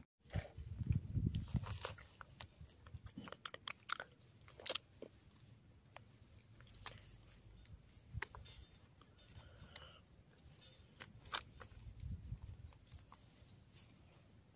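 Faint scattered clicks and crackles with a few low bumps, from a plastic toy figure being handled and moved about in grass.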